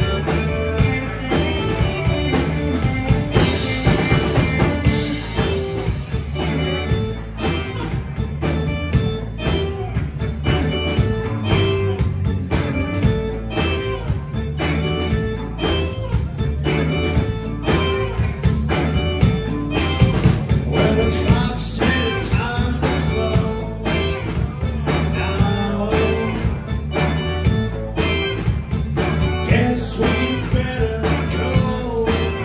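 Live rock band playing at full volume: electric organ, electric guitars and a drum kit keeping a steady beat.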